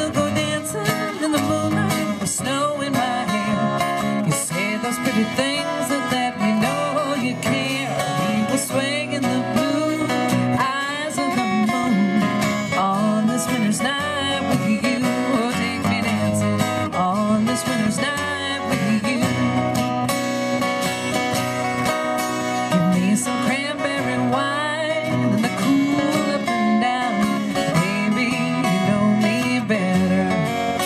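Live acoustic folk song played on two acoustic guitars together, at an even, steady level.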